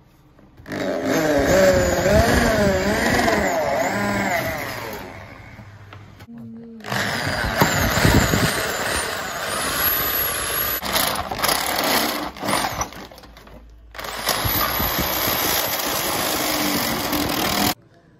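Electric hand drill boring through a thin metal sheet: a twist bit drills a pilot hole, then a step drill bit enlarges it. The motor whine wavers in pitch as the bit bites, in three long runs with short breaks between.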